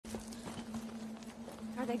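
Film soundtrack ambience: a steady low hum under scattered light clicks and knocks of debris in rubble. A man's voice begins near the end.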